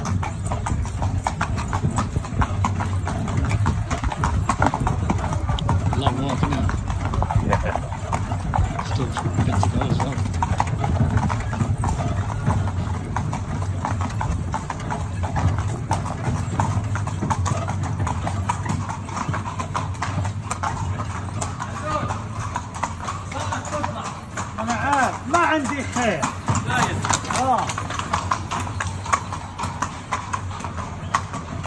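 A horse's hooves clip-clopping steadily as it pulls a carriage, with the carriage rumbling along under it. A voice is heard briefly near the end.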